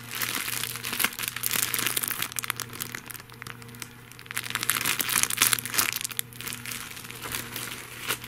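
Clear plastic bag crinkling and crackling as it is handled, easing off briefly just after the middle.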